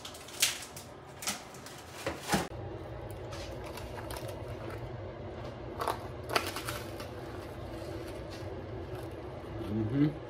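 A person biting and chewing a s'more, with a few short crunchy clicks from the graham crackers, over a low steady hum.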